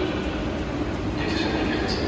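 Steady low rumble of a train in a large station hall, with faint voices in the background.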